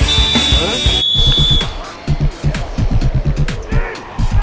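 Music with a steady drum beat, a high held note over the first second and a half.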